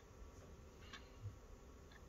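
Near silence: room tone with a faint, sharp tick about once a second and one soft low thump a little past a second in.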